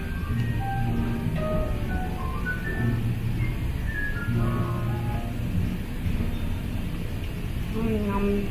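Background music: a slow melody of separate held notes, over a low rumble.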